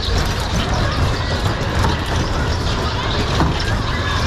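Steady rumbling, hissing noise of a spinning kiddie car ride in motion, with children's voices faintly in the background.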